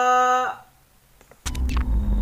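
A woman's drawn-out, sung 'go' holds steady and fades out about half a second in. After a moment of near quiet, the music video's production-logo intro starts abruptly about one and a half seconds in with a deep rumble and a few sharp clicks.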